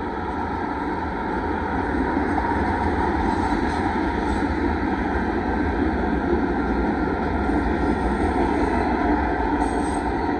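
Freight train cars rolling past close by: a steady, continuous noise of steel wheels running over the rails as tank cars and then autorack cars go by.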